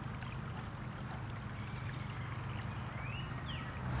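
Small rocky stream running, a steady, soft wash of flowing water.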